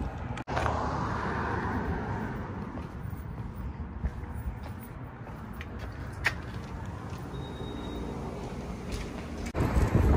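A hand-held phone camera being carried into a shop: steady rumbling handling and background noise, with a brief drop-out about half a second in and a single sharp click about six seconds in.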